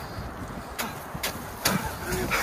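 Wind noise on the microphone outdoors, with a few soft footfalls in snow in the second half.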